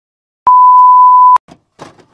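Colour-bars test-pattern tone: a single loud, steady, pure beep lasting just under a second, starting and stopping abruptly.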